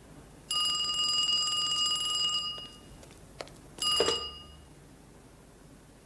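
Wall-mounted telephone's bell ringing: one ring of about two seconds, then a second ring that breaks off almost at once with a clunk as the handset is picked up.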